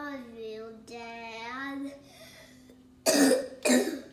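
A child's voice making long, sliding wordless sounds for about two seconds, followed near the end by two loud coughs about half a second apart.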